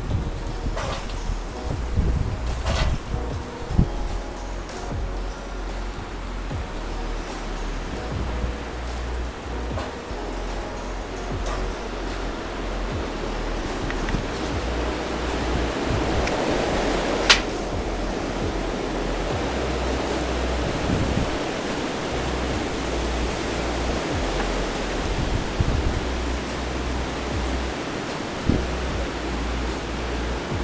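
Strong gusty wind blowing on the camera microphone: a steady rushing noise with heavy low buffeting, swelling to a peak about halfway through. A single sharp click comes just after the peak.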